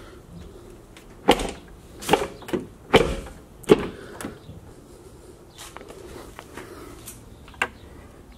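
Chevrolet Silverado pickup door being shut and opened again: a series of knocks and latch clicks, the loudest a thump about three seconds in, then a few lighter clicks.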